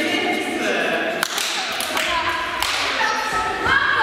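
A young woman's voice in held, pitched notes, close to singing, with a rising slide near the end. About three sharp taps sound through it.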